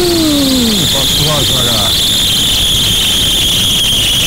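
UAZ-452 'bukhanka' van engine just started and running, with a steady high-pitched squeal that drifts slightly down in pitch, typical of a slipping drive belt; the belt is due for replacement. A person's drawn-out shout rises and falls in the first second.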